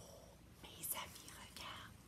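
A woman's faint whispering: two short breathy sounds, one about half a second in and one near the end.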